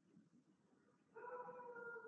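Near silence, then about a second in a faint, high-pitched, held whine lasting about a second.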